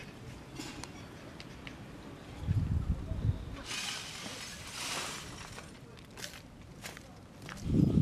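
Crunching and scraping of broken glass and debris, with a few dull knocks, scattered sharp clicks and a heavier thump at the end.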